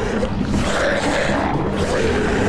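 A monstrous bird's loud animal-like cry, a dramatised creature sound effect as the bird is brought down, over dramatic background score with a sustained low drone.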